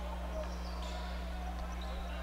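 A basketball being dribbled on a hardwood gym court, over a steady low hum and the murmur of the crowd in the hall.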